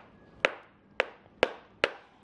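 Small mallet tapping a hollow chocolate piñata shell four times, about two taps a second. The shell holds and does not crack.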